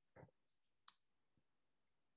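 Near silence, broken by a few faint, brief clicks, the sharpest just before a second in.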